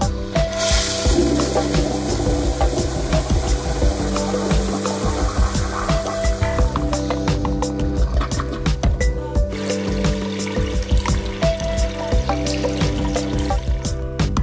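Background music with a rushing water sound effect laid over it, starting about half a second in and dying away about seven seconds in.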